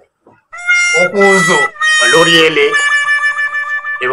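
After a brief pause, a man's voice calls out over a steady, high, buzzy tone that sounds like an added sound effect or musical note; the tone holds on alone for the last second or so.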